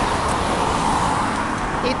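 Steady road traffic noise from cars on the street alongside, a continuous tyre and engine hiss that swells slightly in the middle.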